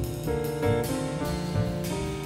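Live jazz: grand piano playing chords over double bass and drums, with a cymbal stroke about twice a second. The saxophone and trumpet are silent.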